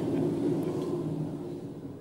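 Rumbling storm noise, wind with thunder, fading away over the two seconds.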